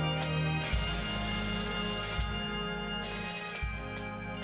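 Background bagpipe music: a slow pipe tune over a steady low drone.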